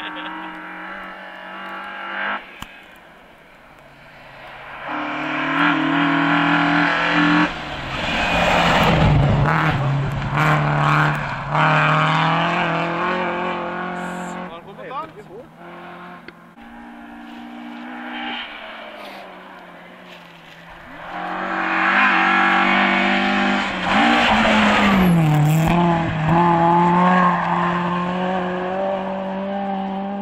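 Rally car engine running hard at high revs and changing pitch through gear changes and lifts, with tyre noise. It comes in two loud spells, about five seconds in and again about twenty-one seconds in, fading between them.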